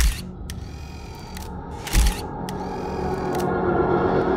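Two loud mechanical clacks, one at the start and one about two seconds in, with lighter clicks between them over a low hum. Music swells in over the last second or two.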